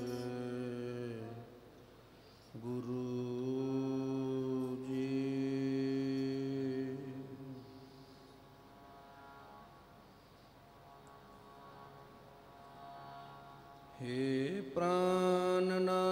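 A man singing Gurbani keertan in long, held notes, chant-like, breaking off briefly near the start. The singing goes quiet through the middle, then a rising note brings the voice back loud near the end.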